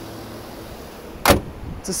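The hood of a GMC Yukon XL Denali being closed: one sharp slam a little over a second in, over faint steady background noise.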